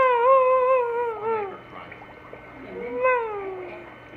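A baby's wordless vocal calls: a long wavering note, then a second shorter one about three seconds in that rises and then falls.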